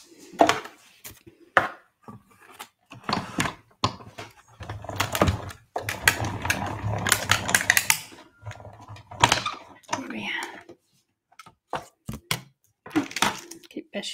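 Clicks and clatter of cutting plates, dies and paper being handled on a die-cutting machine, with a few seconds of steadier rolling noise in the middle as the plates are cranked through the machine.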